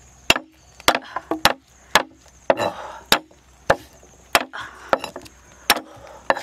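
A knife striking garlic cloves on a thick wooden chopping board: sharp knocks about every half second, with brief rustling of garlic skins between some strokes.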